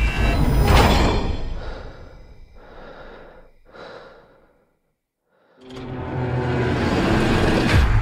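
Film trailer sound mix: a loud dense rumble with breathing sounds fades out to a second of silence about four and a half seconds in. Then a low, steady drone swells back up.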